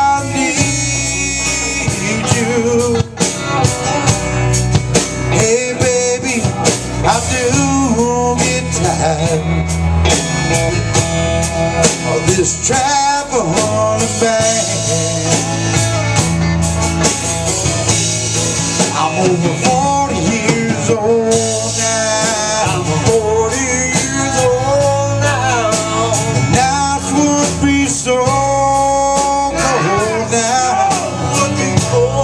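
Live blues band playing on electric guitars and drum kit, with a guitar line bending in pitch.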